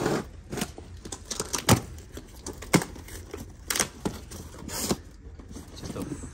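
Cardboard boxes being handled and opened: a run of irregular sharp knocks, with rustling and tearing of cardboard between them.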